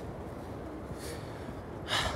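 A person's breathing: a faint breath about a second in, then a louder, gasp-like breath near the end, over a steady low background rumble.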